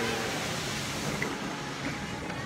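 Steady splashing of a large public fountain, with a murmur of crowd voices behind it; the hiss thins out about halfway through.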